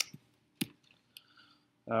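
A few short, sharp clicks spread over the first second and a half, then a man's voice starts near the end.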